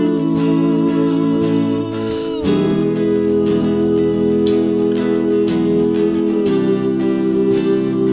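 Home demo song playing: a Gretsch electric guitar played unplugged, its chords ringing, recorded on an iZotope Spire's built-in microphone, with soft layered vocal harmonies held over it. The chord changes about two and a half seconds in.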